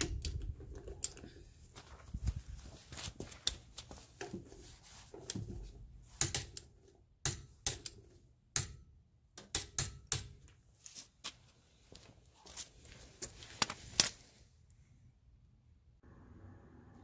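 A click-type torque wrench set to 95 ft-lb being worked on a wheel lock lug nut: a run of sharp, irregular ratchet clicks and knocks. They stop about a second and a half before the end.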